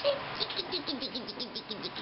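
A person making a rapid string of short, high-pitched chirps with the mouth, about eight a second, that stops shortly before the end.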